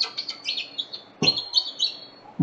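Small birds chirping: a quick run of short, high chirps, with one soft knock a little past a second in.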